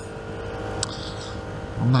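Vespa GTS scooter's single-cylinder four-stroke engine running at a steady cruise, a steady drone under road and wind noise, with a brief click a little under a second in.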